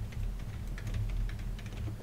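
Computer keyboard typing: a quick, uneven run of key clicks.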